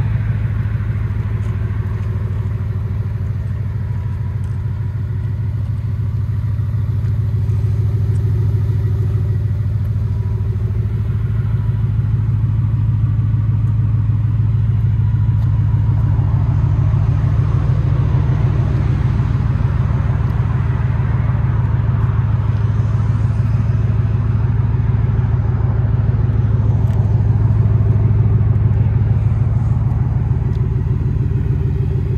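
Ford F-150's 5.0 L Coyote V8 idling steadily, a low, even engine sound that grows somewhat louder through the second half as the rear of the truck and its exhaust come closer.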